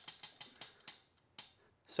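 Spinning prize wheel's flapper clicking against the pegs as the wheel coasts down: the clicks come fast at first and spread further and further apart, with a last click about one and a half seconds in as the wheel stops.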